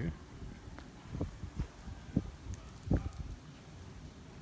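Footsteps of a person walking outdoors: a few soft, low thuds at irregular intervals, with a brief spoken "oh".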